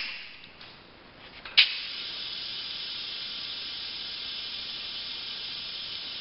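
A sharp click about a second and a half in, then a steady hiss of pressurised gas venting from the stainless pressure/vacuum kettle.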